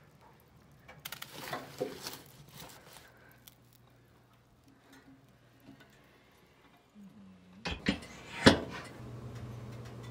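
Wood burning in a stove, with scattered crackles and knocks, then a cluster of sharp snaps near the end, the loudest a single crack. A steady low hum starts just after it.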